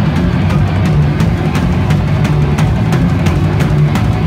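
Hardcore punk band playing live and loud: driving drums with regular sharp cymbal and snare hits over guitar and bass.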